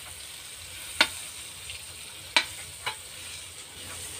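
Butter sizzling in a metal wok as it melts, stirred with a metal spoon that clinks sharply against the pan three times.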